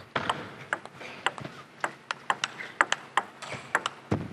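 Table tennis rally: the celluloid ball clicking sharply off the rackets and the table in quick alternation, about a dozen knocks over a few seconds.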